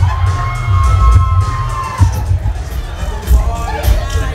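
Dance music with a heavy bass beat, and a crowd of guests cheering and shouting over it; a voice holds one long high note for the first two seconds.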